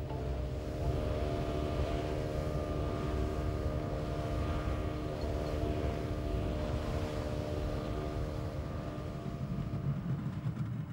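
Outboard motor of a small open fishing boat running at a steady speed: a steady hum over a low rumble, easing off slightly near the end.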